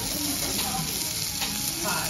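Thick slices of pork belly sizzling steadily on a hot griddle plate, the fat spitting with a continuous hiss.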